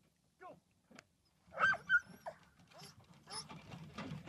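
A dog giving a handful of short, high-pitched yelps and whines, the loudest pair a little before two seconds in.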